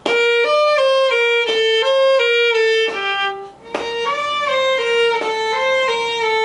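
Solo violin playing a stepwise melody in slurred bowing, several notes to each bow stroke with a bow change about every one and a half seconds. There is a short break a little over halfway through, then the phrase resumes. The bowing is cautious and restrained, held back to avoid accents.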